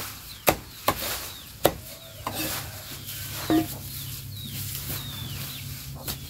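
A large knife chopping through a pile of cattle fodder grass: three sharp chops in the first two seconds and another about three and a half seconds in. Short, high, falling bird chirps sound in between.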